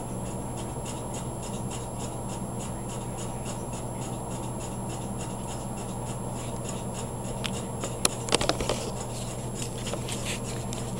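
Steady low electrical hum of room tone, then a short cluster of sharp clicks and rubbing about eight seconds in as the camera is picked up and handled.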